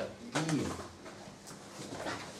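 A man's voice saying one short word with a falling pitch, then quiet room sound with a faint click about a second and a half in.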